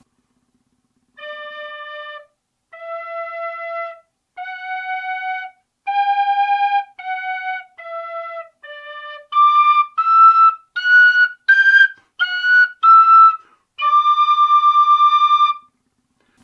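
A Generation tabor pipe and a Generation tin whistle with its top three holes taped over, both played in unison so they sound as one. A run of short, clear notes steps up and back down, then jumps about an octave higher and rises and falls again, the pipes overblown into their upper register. It ends on one long held note.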